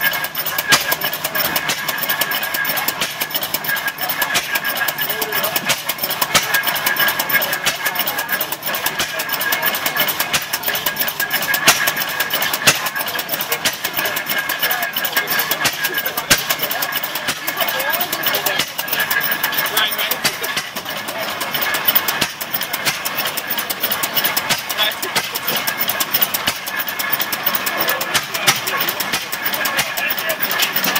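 Antique single-cylinder stationary gas engine, a hopper-cooled putt-putt engine with heavy flywheels, running steadily with a continuous train of rapid knocks from its firing and valve gear.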